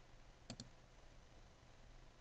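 One computer mouse-button click about half a second in, heard as a sharp press and release a split second apart, over a faint low hum.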